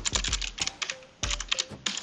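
Typing on a computer keyboard: a quick, irregular run of key clicks as a short command is typed and entered.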